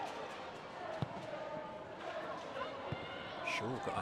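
Football match ambience: faint crowd and player voices over an even stadium noise. A ball is struck with a sharp thud about a second in and again near three seconds.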